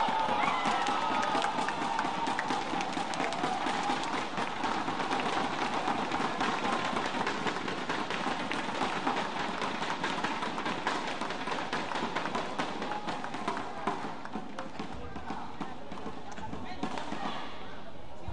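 Badminton arena crowd cheering and clapping after the match-winning point: a loud shout at the start, then a dense, steady clatter of clapping and voices that slowly dies down.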